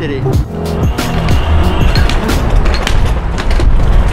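Skateboard rolling fast over sidewalk paving, its wheels rumbling with sharp clicks as they cross the slab joints, over background music.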